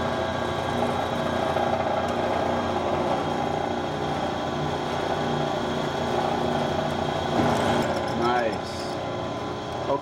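Drill press running steadily with a small twist bit boring a pilot hole through steel flat bar, a steady motor hum with the cutting noise over it.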